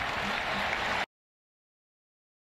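Stadium crowd applauding and cheering a made field goal, heard through the TV broadcast audio; it cuts off abruptly about halfway through, leaving silence.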